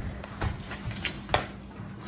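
A few light knocks and clicks of a plate and a pizza box being handled on a kitchen counter, the sharpest about 1.3 seconds in.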